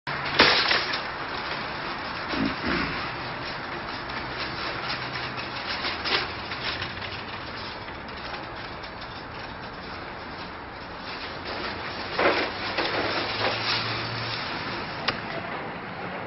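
Wire shopping cart clattering: a loud metallic clank just after the start, as of a cart pulled from a nested row, then rattling with several more clanks as it is pushed along.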